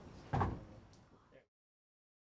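A chair being shifted: one dull thump about a third of a second in, fading over about a second, then the sound cuts off suddenly.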